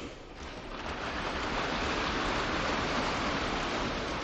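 Audience applause that builds up over the first second and then holds steady, in answer to the speaker's applause line.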